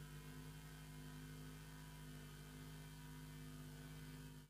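Faint, steady electrical hum made of several constant tones, with a light hiss behind it.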